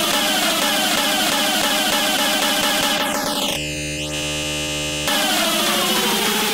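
Hardcore gabber DJ mix in a breakdown without the kick drum: a fast repeating riff of gliding synth notes. About three seconds in a sweep falls away into a held buzzing synth chord for about a second and a half, then the riff returns.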